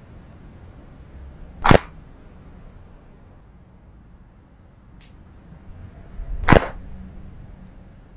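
Two sharp, loud cracks about five seconds apart, with a faint click between them: joints popping during chiropractic adjustments.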